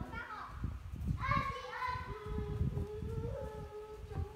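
A young girl's voice calling out in one long, drawn-out sound that slowly falls in pitch, starting about a second in, over irregular low thumps.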